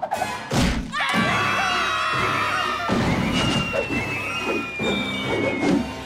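Cartoon score music with a heavy thud about half a second in. From about three seconds in, a long whistle glides slowly down in pitch and stops near the end.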